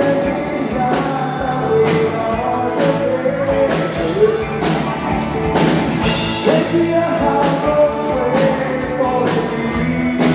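Male vocalist singing a Karen-language song with a live rock band: steady drum kit beat, electric guitars and keyboard.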